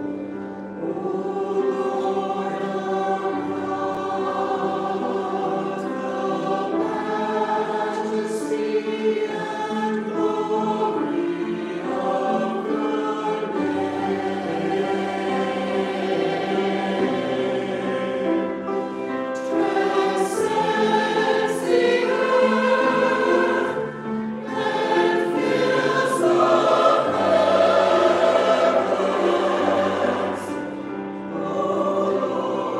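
Congregation singing a hymn together with a song leader, in continuous sustained notes that change pitch every second or so.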